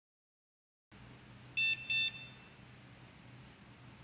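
Dog training collar's receiver beeping twice in quick succession, two short high-pitched electronic beeps set off from the remote in sound mode, over a faint steady hum.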